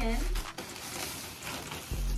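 Plastic shipping bag rustling and crinkling as a sequined dress is pulled out of it.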